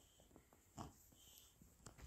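Near silence: room tone, with one faint short sound a little under a second in.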